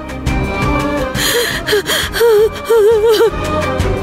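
Sad background score: a wavering, held melody line over a low drone, with a sharp gasp or sob a little after a second in.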